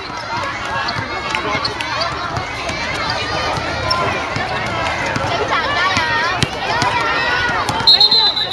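Many girls' voices calling and shouting over one another on an outdoor basketball court, busiest near the end, with scattered sharp knocks of a basketball being dribbled on the hard court.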